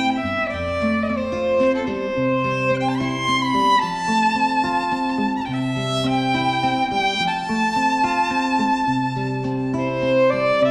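Violin playing a slow melody of long, held notes with vibrato over acoustic guitar accompaniment: an instrumental break between verses of a folk ballad.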